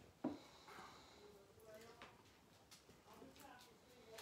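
Near silence with faint stirring: a long-handled spatula moving through wine and chopped fruit in a glass pitcher, with one sharp click just after the start.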